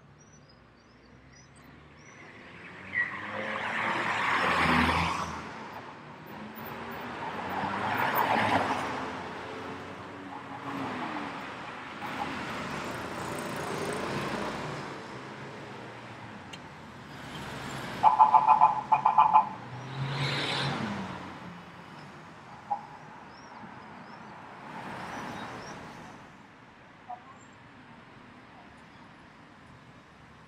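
City street traffic: cars pass one after another, each swelling and fading. About 18 seconds in, a horn sounds a rapid series of short beeps, the loudest sound.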